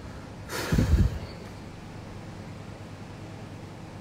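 A man's short, loud snort or forceful breath close to the microphone, about half a second in, lasting around half a second.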